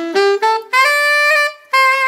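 Alto saxophone playing a soulful R&B lick in concert C: a quick climb of short notes up to a long held high D. After a brief break it plays a little half-step turn through E-flat back down.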